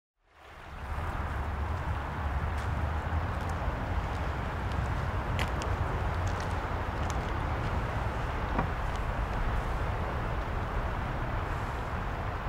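Steady outdoor ambience that fades in over the first second: a low rumble of distant traffic under an even hiss, with a few faint clicks.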